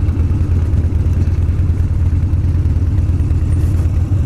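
Harley-Davidson Street Bob's air-cooled V-twin engine running steadily at low speed as the motorcycle rolls slowly into a parking lot, with a loud, even low rumble.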